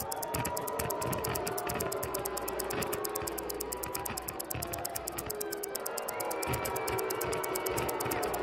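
Stopwatch ticking sound effect, a rapid, even ticking several times a second, counting down the answer time over soft background music.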